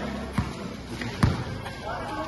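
A basketball being dribbled on a concrete court: two bounces, a lighter one and then a louder one a little over a second in, with voices in the background.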